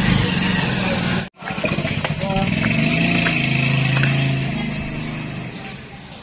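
Motorcycle engine of a Philippine tricycle running, with voices over it. It breaks off for an instant a little over a second in, then holds a steady low note that swells and fades toward the end.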